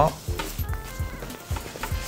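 Nylon bag fabric rustling and scraping as a tablet is slid down into the bag's padded tablet compartment, with a few light knocks, over soft background music.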